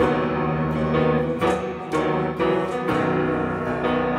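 A worship band plays an instrumental passage without voices: keyboard piano chords change every second or so over acoustic guitar and light percussion.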